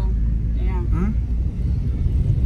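Steady low rumble of a car on the move, heard inside the cabin, with a quiet voice briefly about halfway through.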